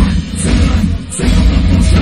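Heavy metal band playing loud live, heard from beside the drum kit, with drums and cymbals prominent over heavy bass. It runs in a stop-start rhythm, breaking off briefly about a quarter second in and again about a second in.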